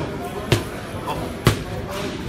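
Boxing gloves striking padded focus mitts: two sharp smacks about a second apart.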